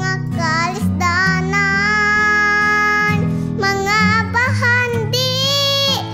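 A young girl sings a Cebuano song over instrumental accompaniment. She holds one long note from about a second and a half in, and ends the phrase on a wavering held note.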